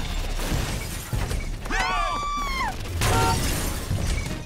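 Cartoon sound effects of a giant robot stomping down onto cars: heavy thuds with metal crunching and glass shattering. A falling pitched whine comes about halfway through, and a short steady tone follows near the end.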